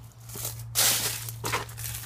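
Dry dead leaves crunching and rustling underfoot and against the phone, a run of crackling rustles with the loudest a little under a second in.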